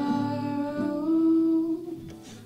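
A girl's solo voice singing with an acoustic guitar, ending on a long held note about halfway through that dies away near the end.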